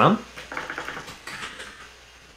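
Typing on a computer keyboard: soft, quick key clicks.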